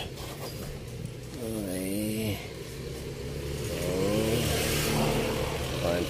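A vehicle engine revving up and down twice, each swell lasting about a second, over a steady low hum. A broad rush of noise swells up near the end.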